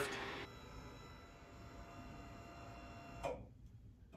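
Motorized hydraulic scissor lift running faintly as it raises the tabletop: a low steady hum with a few thin whining tones, starting about half a second in and stopping abruptly just after three seconds.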